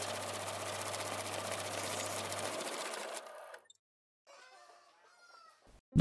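A flock of Đông Tảo chickens clucking and calling together in a dense chatter that stops about three and a half seconds in, followed by a few fainter calls.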